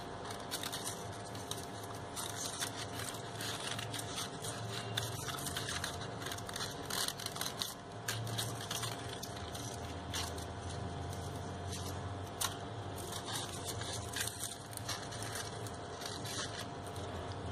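Crepe paper rustling and crinkling in irregular small crackles as hands bend paper flowers and leaves on a wire stem, over a faint steady hum.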